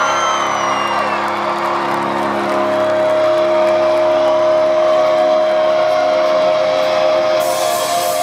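Live rock band, heard from the audience, holding long ringing electric-guitar chords while the drums keep playing underneath.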